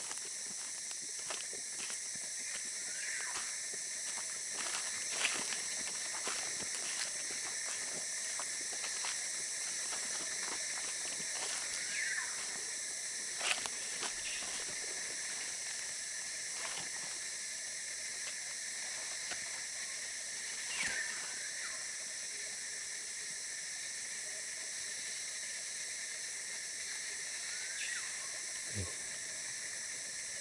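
Steady shrill chorus of tropical forest insects, with scattered crackles and clicks of footsteps on dry leaf litter and a few short chirps.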